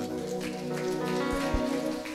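A worship band holds a sustained chord at the end of a song, with hands clapping over it.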